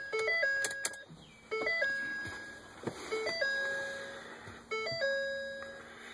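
The pickup cab's electronic warning chime repeating, four times about every second and a half: each a quick step up in pitch followed by a held tone that fades.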